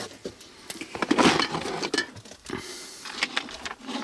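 Clear plastic parts-organizer boxes being lifted and shifted in a wooden tool drawer, with irregular clicks, knocks and the rattle of small parts inside.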